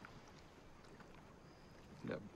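Near silence: faint steady background noise.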